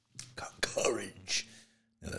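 A man's voice speaking softly and breathily in short, broken phrases, close to the microphone.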